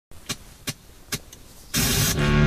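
A few faint sharp clicks about half a second apart, then a sudden loud rush of noise near the end.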